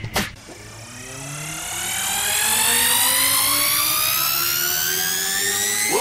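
A rising synthesizer sweep in a Tamil film's background score: several tones glide slowly upward together, swelling in over the first two seconds after a short hit at the start.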